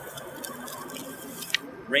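Faint background of distant highway traffic, left garbled and watery by noise-reduction filtering, with one sharp click about one and a half seconds in.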